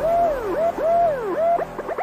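Siren-like wailing tone: a pitch that rises quickly and falls slowly, about three sweeps in two seconds.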